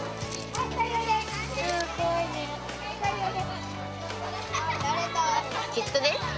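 Children's voices and chatter, high and overlapping, over background music with sustained low notes that change about every second.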